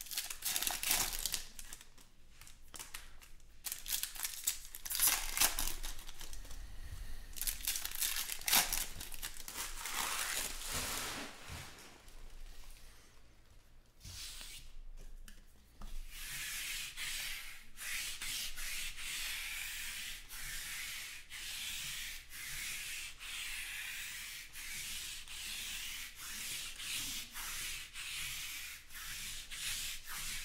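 Baseball trading cards and their foil pack wrappers being handled: crinkling and irregular rubbing for the first dozen seconds, then a dip, then a steady rhythmic rubbing of cards sliding against each other, about once a second.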